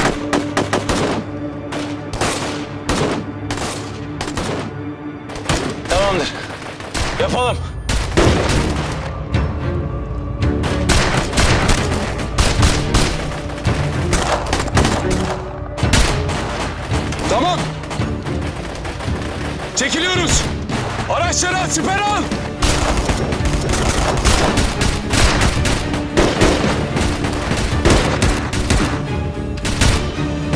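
Dense rifle gunfire exchange, many shots a second, some in automatic strings, over a steady dramatic music score.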